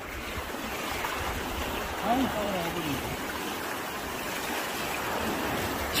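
Steady wash of shallow sea water and small waves over a sandy beach, with one short voice call about two seconds in.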